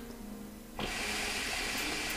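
Hookah bubbling steadily as smoke is drawn through the water in its base, starting a little under a second in.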